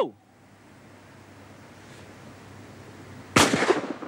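A single shotgun shot fired at a flying clay target about three and a half seconds in, sudden and loud, with a brief echo dying away.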